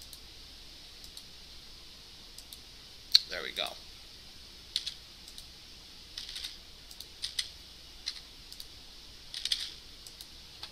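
Computer keyboard keystrokes in small clusters of one or two, typing two-digit numbers into a web form, with a sharp click about three seconds in that is the loudest sound.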